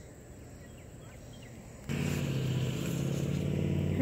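A motor engine running steadily, starting abruptly about two seconds in over a faint outdoor background.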